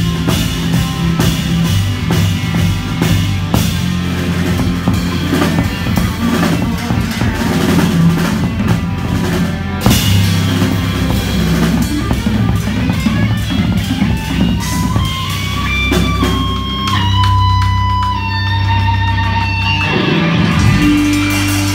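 Live rock band playing: busy drum kit with electric guitar and bass. About halfway through a big accented hit lands. The cymbals then thin out while an electric guitar line slides upward and holds long sustained notes over the bass.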